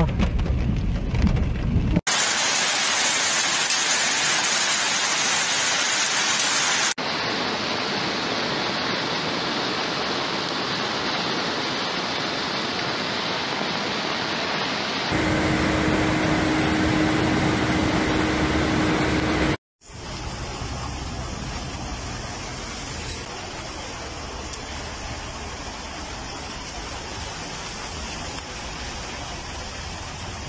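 Steady rushing noise of floodwater and heavy rain, changing abruptly several times as the clips cut, with a brief drop to silence about two-thirds of the way in. A steady low hum sounds for a few seconds in the middle.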